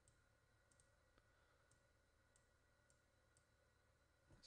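Near silence: faint room hum with a handful of faint, sharp computer-mouse clicks spread through, as control points are picked and dragged.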